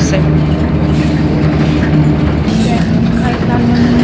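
Bus engine running, heard from inside the passenger cabin as a steady low drone; its pitch steps up about two and a half seconds in as the bus changes speed.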